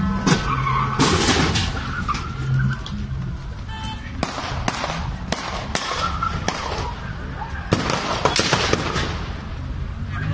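Gunfire in a street shootout: a string of sharp gunshots at irregular intervals, with a few near the start and most between about four and nine seconds in.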